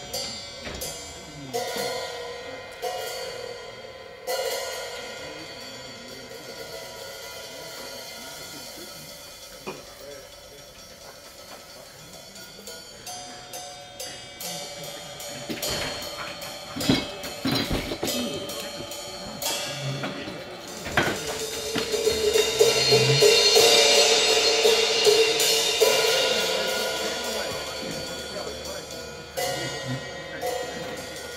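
Live hill-country blues on electric guitar and drum kit: guitar over drums and cymbals, quieter in the middle. About two-thirds of the way through, cymbals swell into a loud wash over a held guitar note, which then slowly fades.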